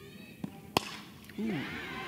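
A single sharp crack of a softball bat hitting a pitched ball, a little before the middle, followed by a faint haze of background noise.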